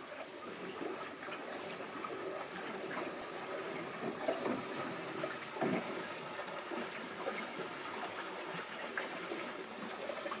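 A steady, high-pitched buzz holding one pitch throughout, over faint, irregular background noise.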